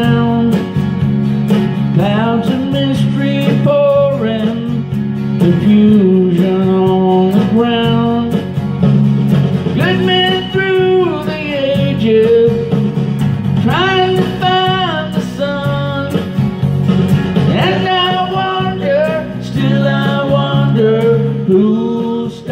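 A man singing with guitar accompaniment, his voice held in long sung phrases.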